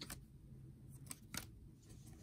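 A few faint swishes of baseball trading cards being slid off the stack one behind another in the hand, one just after the start and two close together about a second in.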